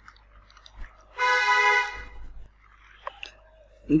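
A short steady horn-like toot, a little under a second long, about a second in, with a few faint clicks around it.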